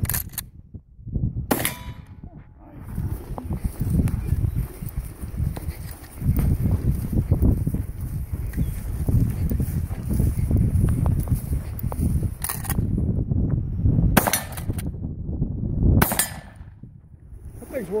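Winchester Model 1897 pump-action shotgun firing: one shot about a second and a half in, then after a long gap three more shots in the last six seconds, each a second and a half to two apart.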